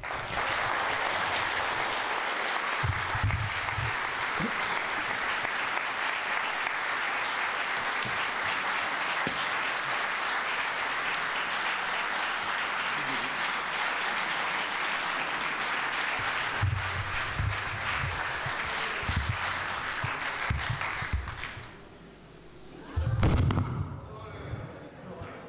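Audience applause, steady for about twenty seconds and then dying away, with a few low thumps through it and a louder bump near the end.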